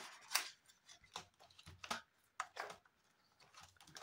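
Faint, scattered rustles and light clicks of a paper banknote and the plastic pages of a cash-envelope binder being handled as a five-euro note is tucked into a clear binder pocket and the pages are turned.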